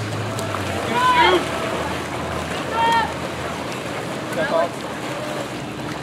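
Steady splashing of water polo players swimming and struggling in a pool, with wind on the microphone. Short shouts from players or spectators rise over it three times, about one, three and four and a half seconds in.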